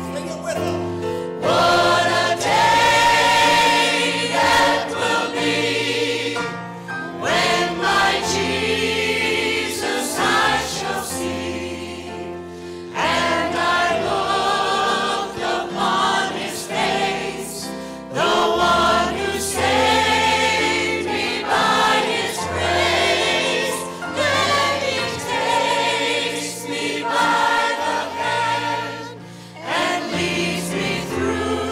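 A church choir, led by three singers on microphones, singing a gospel hymn in full phrases with piano accompaniment.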